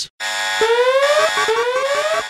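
Electronic whooping alarm effect: a synthetic tone sliding up in pitch over most of a second, then dropping back and rising again, repeated, after a brief hiss at the start. It is the siren-style sting that opens a breaking-news segment.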